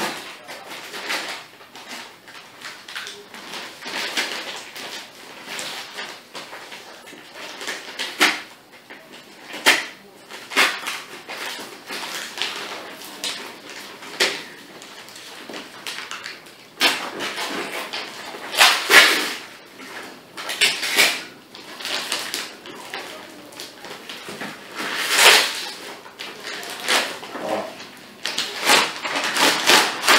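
Brown paper wrapping and packing tape being torn and crinkled off a cardboard parcel. An irregular rustling runs throughout, with several louder rips in the second half.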